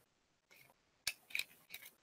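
A few short, faint clicks in quick succession from about a second in, with near silence before them.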